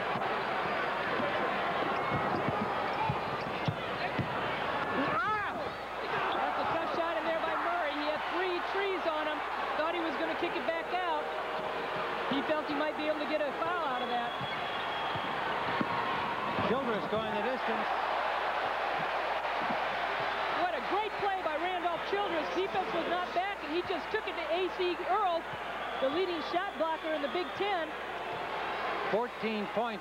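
Arena sound of a live basketball game: a steady murmur of crowd voices, the ball bouncing on the hardwood floor, and many short high squeaks, more frequent in the second half.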